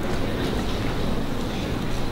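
Steady room noise with a low rumble and no speech, fading up just before.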